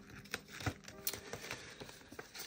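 Light rustling and a few soft taps of banknotes and a plastic binder envelope being handled, over faint background music.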